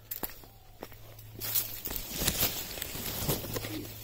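Leaves and stems of climbing yam vines rustling and brushing as someone pushes in among them, starting about one and a half seconds in, over a steady low hum.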